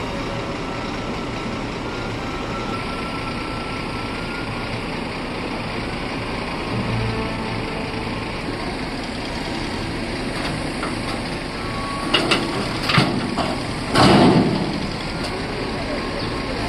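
Heavy diesel machinery of a reach stacker runs steadily as it lifts a shipping container off a trailer. A few loud, sudden knocks and bursts come about twelve to fourteen seconds in, the loudest near the fourteenth second.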